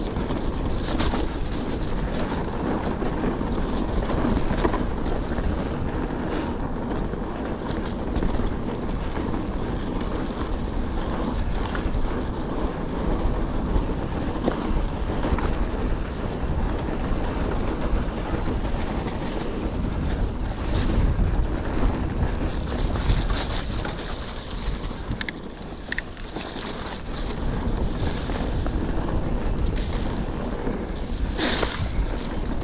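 Wind buffeting a GoPro's microphone over the rumble of a Calibre Triple B full-suspension mountain bike's tyres rolling along a muddy dirt singletrack, with scattered clicks and rattles from the bike. The noise eases for a few seconds about three-quarters of the way through.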